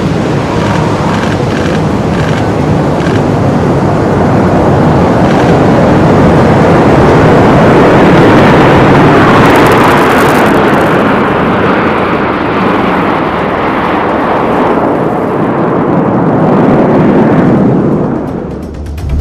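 Jet engines of the Red Arrows' BAE Hawk trainers as the formation flies past: a continuous jet noise that swells to its loudest about eight seconds in, then grows duller as the high end fades.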